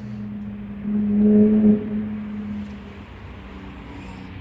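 A Toyota Starlet's hatchback tailgate released and rising on new gas struts, over a steady low hum that swells louder for under a second about a second in.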